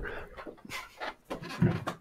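A few short, soft breathy puffs of air in quick succession.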